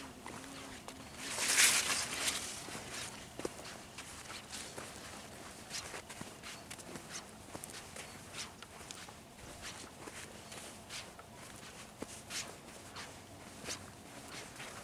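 Footsteps walking on sand and through grass: soft irregular steps throughout. About a second in, a louder hissing rush lasts about a second.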